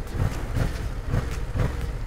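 Yamaha MT-07 parallel-twin engine idling on its stock exhaust, a steady low rumble with a few soft pulses, heard from the rider's seat while the bike stands at a junction.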